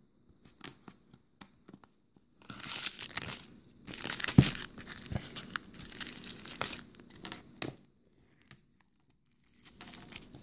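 Plastic and foam packing material crinkling and tearing in several bursts as it is pulled away from a boxed phone, with a couple of dull knocks about four and five seconds in.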